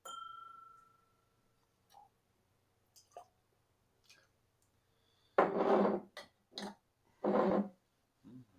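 Glass clinks and rings clearly at the very start, fading out over about a second, followed by a few faint light taps. Near the end come three short, loud rushing noises.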